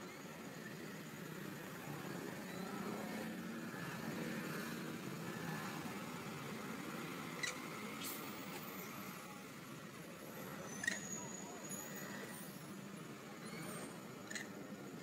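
Steady low background rumble, like a distant idling engine, with a few short sharp high clicks or chirps, the loudest about eleven seconds in.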